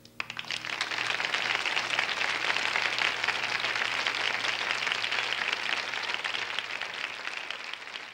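Audience applauding: clapping swells within the first second, holds steady and dense, then begins to thin near the end.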